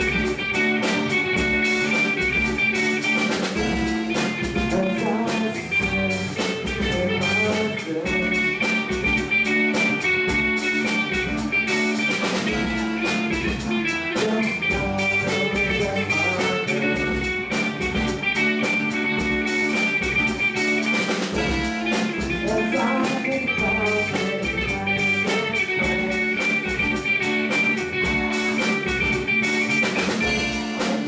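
Live rock band playing: electric guitars over a drum kit keeping a steady beat.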